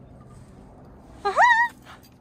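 An animal's single short, high, whine-like call about a second and a quarter in: it rises, then holds its pitch briefly, against low outdoor background noise.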